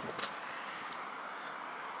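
Steady outdoor background hiss with no clear single source, with a faint tick near the start and a sharper click about a second in.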